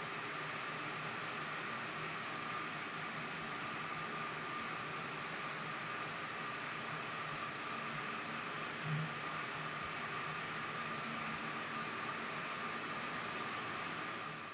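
Rice mill machinery running: a steady, even whir with a faint hum, and one brief low bump about nine seconds in.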